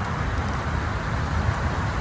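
Steady low rumble of road traffic, cars and trucks driving by, with no distinct passes.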